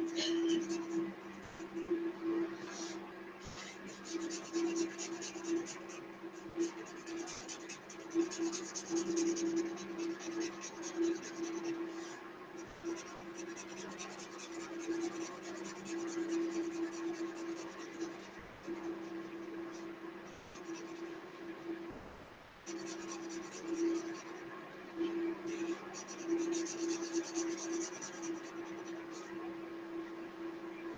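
A felt-tip marker scratching and rubbing across paper in repeated back-and-forth strokes as an area of a drawing is coloured in.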